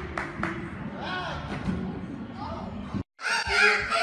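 Voices echoing in a large gym, with several sharp knocks, among them two close together about a second and a half in. The sound cuts out abruptly about three seconds in, and louder talking follows.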